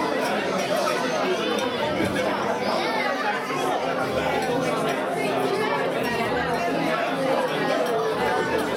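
Many people talking at once, a steady hubbub of overlapping conversation from seated guests in a function room.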